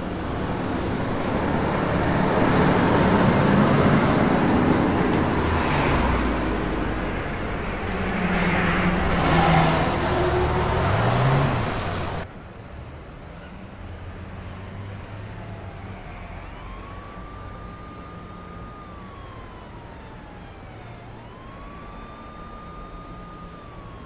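A loud, rushing noise that cuts off suddenly about halfway through. After it comes a quieter background with a distant siren wailing, rising, holding and falling twice near the end.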